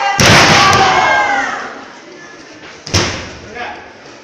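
A wrestler's body slammed onto the ring mat: a loud thud just after the start, followed by spectators' shouts. A second, sharper thud comes about three seconds in.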